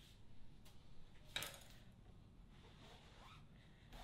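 Near silence: quiet kitchen room tone, with one brief faint clatter about a second and a half in.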